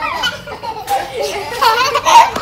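A young girl's high voice, chattering and laughing, with other children's voices around her.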